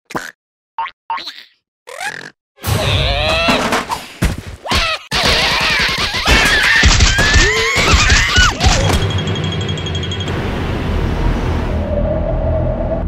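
Cartoon sound effects and the larva characters' wordless squeals and grunts, a few short blips at first, then a busy stretch of wobbling cries and hits over comic music. After about ten seconds a steady music bed takes over.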